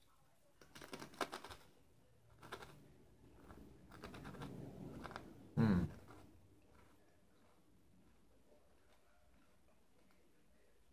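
Chewing on ridged potato chips: a run of crisp crunches about a second in, a few more around two and a half seconds, then softer chewing. A short hummed "mm" falling in pitch comes a little past the middle.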